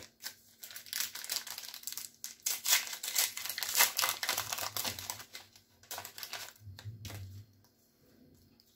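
Shiny trading-card pack wrapper being torn open and crinkled in the hands: a dense, irregular run of crackles and rustles that stops about seven and a half seconds in.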